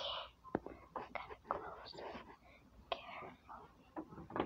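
A person whispering in short breathy bursts, the words not made out, with a few sharp clicks and knocks.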